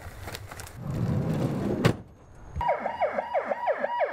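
An ambulance siren starts about two and a half seconds in with a fast yelp: falling sweeps, about four a second. Before it there is a low rumble with a few sharp knocks.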